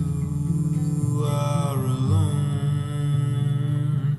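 Acoustic guitar played continuously, with a long wordless sung note from the singer about a second in that bends in pitch and fades by the middle.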